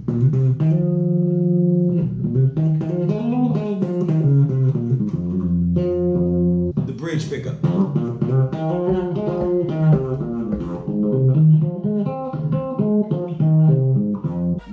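Six-string short-scale electric bass with Bartolini pickups, played solo in melodic lines with chords and held notes. It is first heard through both pickups, then through the bridge pickup alone from about seven seconds in.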